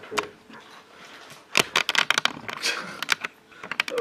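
A rapid run of short clicks and taps, starting about one and a half seconds in and coming in two quick clusters, with a few more near the end.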